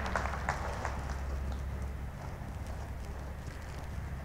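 A horse's hooves falling softly on arena sand as it moves along the track: a few faint, scattered footfalls over a steady low hum.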